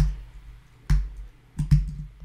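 A few separate clicks from a computer keyboard and mouse, about four strokes spread unevenly over two seconds.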